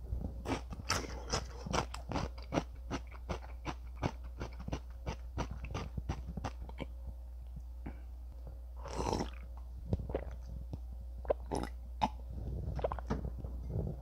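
A person chewing a mouthful of spicy stir-fried noodles (Meat Spaghetti Buldak Bokkeum-myeon): wet mouth clicks and smacks, about three a second for the first several seconds, then sparser. One longer rushing sound comes about nine seconds in.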